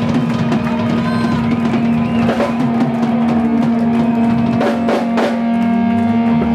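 Live rock band with drums to the fore: the drummer plays rapid, busy fills around the kit while a single low note is held steadily underneath.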